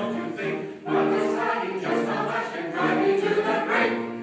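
Small mixed choir of men's and women's voices singing a Christmas choral piece, with a short break between phrases just before one second in.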